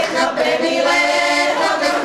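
A women's folk singing group singing a Slovak folk song together, several voices carrying one sustained melody.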